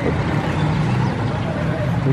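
A motor vehicle engine running steadily, a low even hum over street traffic noise.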